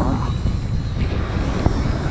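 Wind buffeting the camera microphone on an open beach: a steady low rumble, with a faint click about two thirds of the way through.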